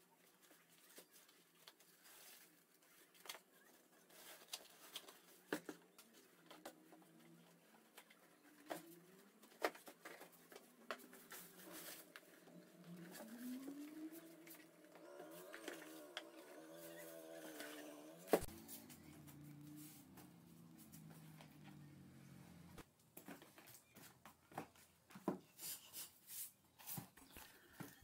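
Near silence broken by sparse, faint knocks and rustles as small cardboard boxes are lifted out of hay-straw packing. In the middle, a faint wavering pitched sound rises and falls for a few seconds.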